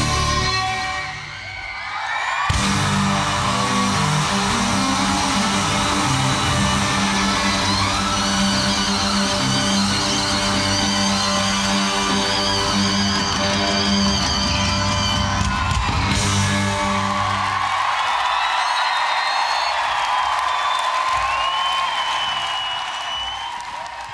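Heavy metal played live on amplified, distorted cellos. After a brief dip it comes in full and heavy, then around the middle the low end drops out, leaving high sustained and gliding cello lines that fade toward the end.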